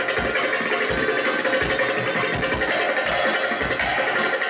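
Live band music with a bağlama (long-necked Turkish saz) and other instruments over a steady, regular drum beat.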